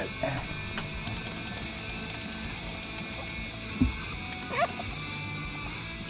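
Quiet background music over a steady hum, with a brief rising yelp about four and a half seconds in.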